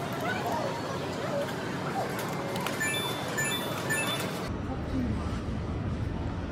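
Arcade background of voices and machine noise, with a run of short electronic beeps from a claw machine about three seconds in.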